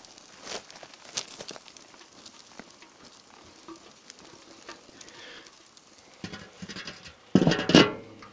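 Oak and manzanita wood fire in a Weber kettle grill crackling and sizzling under a brisket, with scattered small pops, as the grill lid is waved over it to fan the flames. Near the end a louder metallic clatter as the lid is set back on the kettle.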